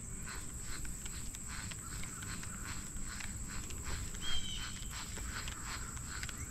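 Faint, quick, irregular ticking and rustling from a baitcasting reel and rod being worked during the retrieve of a topwater lure, over a low outdoor rumble. A short high chirp comes about four seconds in.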